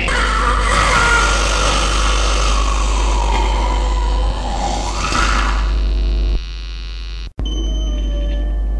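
The last seconds of a raw black metal demo track: a dense wash of distorted guitar noise ringing out over a steady mains hum. It thins out about six and a half seconds in, cuts to silence for an instant, and the next track opens with steady ringing drone tones.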